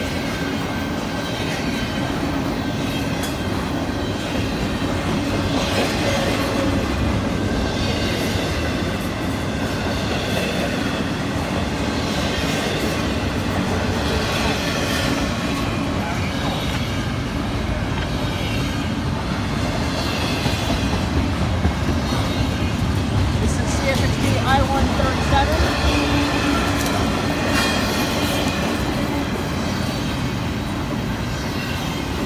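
Double-stack intermodal freight train passing close by at speed: a steady rumble of steel wheels on rail with clickety-clack from each car's trucks, swelling about every two seconds as the cars go by.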